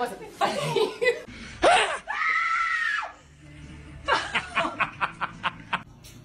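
A scream, one high-pitched cry lasting about a second, about two seconds in, followed near the end by quick, repeated bursts of laughter from someone who has just been startled by a prank.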